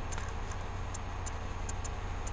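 A steady low hum with faint, light ticks about three times a second, not quite evenly spaced.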